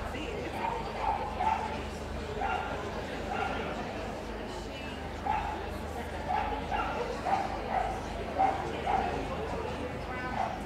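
A dog yapping in short, repeated barks, about one or two a second and more often in the second half, over the murmur of people talking.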